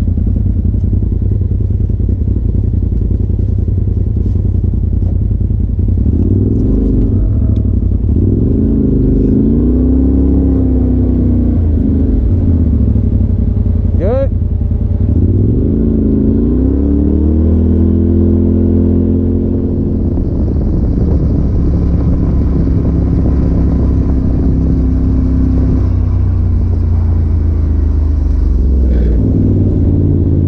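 Polaris RZR side-by-side engine running under way, its revs rising and falling with the throttle. A brief high rising chirp cuts through about halfway.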